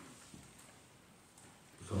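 Quiet room tone during a pause in a man's speech, with his voice starting again near the end.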